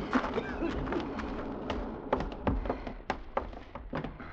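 Radio-drama sound-effect footsteps on wooden boards: a scatter of irregular knocks and taps, as of people stepping into a wooden shack, over a low steady hiss.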